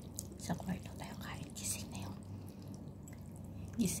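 A person eating noodles close to the microphone: chewing and short wet mouth noises, with a few murmured vocal sounds, over a steady low hum. Speech begins right at the end.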